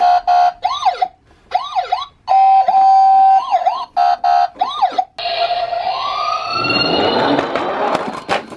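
Toy ambulance's electronic siren sound effects, played from its speaker in short bursts. The pattern switches between a steady tone, wails and quick yelps, with brief gaps as the side buttons are pressed. About five seconds in, it gives way to a rising whine and a growing rumble as the toy rolls down the ramp.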